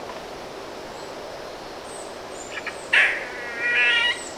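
Outdoor natural sound recorded with the picture: a steady insect-like hum, with faint high chirps and, about three seconds in, a loud short burst followed by a buzzy animal call with stacked tones that runs to the end.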